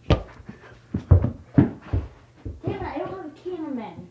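A soccer ball is kicked and bounces on a carpeted floor: a thud at the start and several more a second or two in. Near the end comes a drawn-out wordless vocal sound that falls in pitch.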